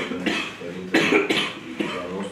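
A man coughing close to a hand-held microphone: one cough at the start, then two more in quick succession about a second in, with a few spoken sounds between them.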